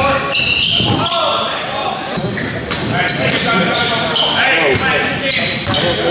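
Indoor basketball game: many short high-pitched squeaks of sneakers on the hardwood court, a ball bouncing, and shouting voices of players and spectators, all echoing in a large gym.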